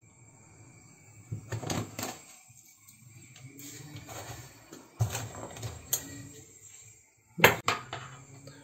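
Metal kitchen tongs clicking and knocking against a pot and mugs in a few short bursts as pieces of fried lángos dough are lifted out and hung up to drain, with a louder double clatter near the end.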